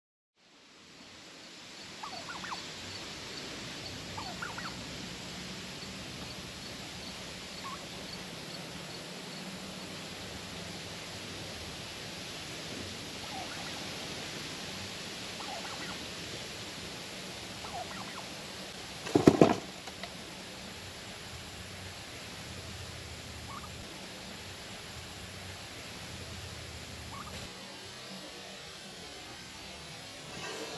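Turkey calling close by: scattered short, soft calls, then one loud call a little past halfway.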